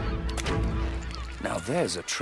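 Cartoon seagull's harsh cry, a rising-and-falling squawk near the end, over steady background music.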